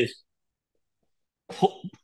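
A man's voice trails off, then complete silence for over a second, then a brief cough near the end.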